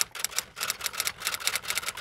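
Typing sound effect: a rapid, even run of key clicks, about eight a second.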